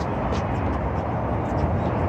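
Steady low rumble of urban ambience, the wash of distant city traffic, with no distinct events.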